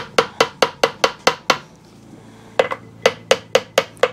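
Hammer tapping repeatedly on an engine's oil pump and distributor drive housing to break its gasket seal and free it. The taps come in two quick runs of sharp, short metallic knocks, about five a second, with a pause of about a second between them.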